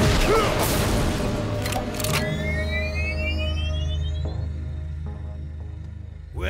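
Cartoon sound effects of slug-blaster shots, sharp whooshing bursts in the first two seconds, followed by a rising whistle, over a tense music score with a steady low drone that fades near the end.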